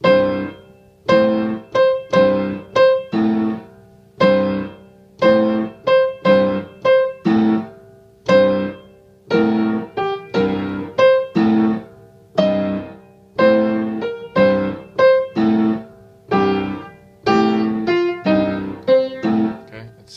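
Piano playing short, repeated chords in an uneven, syncopated blues rhythm, about one to two stabs a second. The chord voicing shifts a few times along the way.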